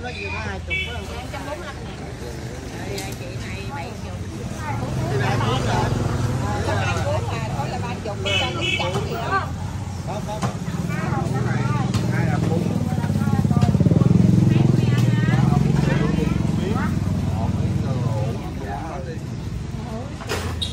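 Passing motorbike engines on the street, swelling twice and loudest about two-thirds of the way through, under people talking at the stall.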